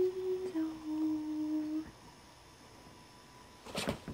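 A voice hums two held notes, a short higher one stepping down to a longer lower one, then falls quiet. A few soft clicks or rustles come near the end.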